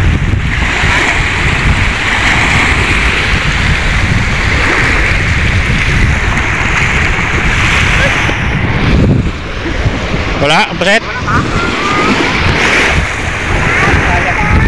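Wind buffeting the microphone over small waves washing onto a pebble shore, a steady rushing noise. About ten seconds in, a brief voice calls out.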